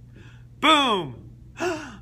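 A man's voice making two breathy downward vocal slides, a loud longer one about half a second in and a shorter one near the end, in the manner of sighs, within a solo singing of the tenor part of a choral piece.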